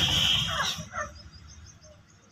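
A loud, harsh squawk from a domestic chicken flock, lasting under a second at the start, followed by a fainter call about a second in.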